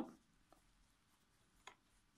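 Near silence: room tone, broken by two faint short clicks, one about half a second in and a slightly louder one near the end.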